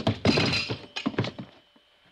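Radio-drama sound effects: a run of sharp knocks and thuds over the first second and a half, dying away.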